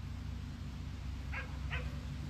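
A dog barking twice in quick succession, two short yips less than half a second apart, over a low steady hum.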